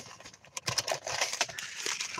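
Paper seed packets rustling, with small irregular clicks and knocks, as they are rummaged out of a car's centre console.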